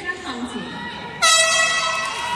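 An air horn gives one loud, steady blast starting about a second in, a sudden harsh tone held to the end.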